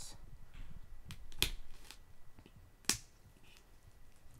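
A small knife cutting through clear plastic shrink-wrap on a cardboard box, with soft scratching and crinkling of the film and a few sharp clicks, the loudest about one and a half seconds in and just before three seconds. The wrap is hard to cut open.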